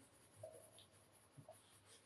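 Near silence with faint coloured-pencil shading on paper: a couple of tiny scratches, about half a second in and again about a second later.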